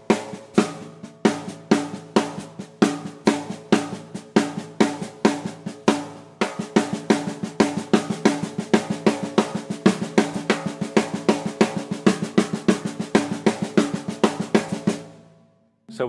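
Snare drum played with the left hand alone in a steady stream of sixteenth notes: quiet ghost notes with loud rim-shot accents recurring in a seven-note grouping, over the hi-hat pedal kept on the beat. The playing breaks briefly about six seconds in, resumes, and stops about a second before the end.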